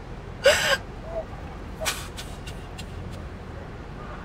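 A woman crying alone: a loud sob about half a second in, then gasping, catching breaths and a few sharp sniffles.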